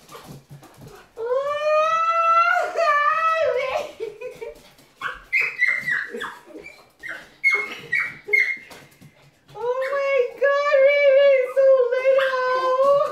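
A woman's long, high-pitched wordless squeals of excitement, each held for a few seconds, with short high yelps between them.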